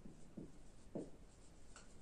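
Faint sounds of handwriting: about three short separate strokes of a pen or marker on a writing surface.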